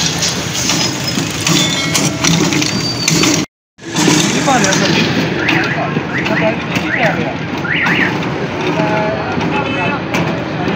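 Small petrol engine running steadily, driving a motorised pestle that grinds sardai ingredients in a large bowl. The sound cuts out for a moment about a third of the way through.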